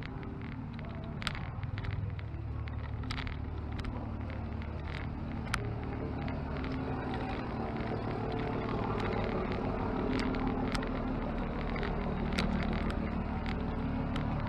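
A steady low motor rumble, like a road vehicle, that grows somewhat louder toward the end, with scattered sharp clicks over it.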